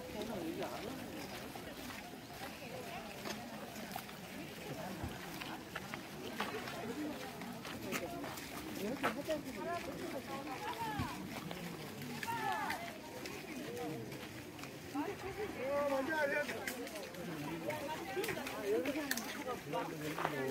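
Indistinct chatter of several people talking along a busy walking path, voices at a distance rather than close to the microphone.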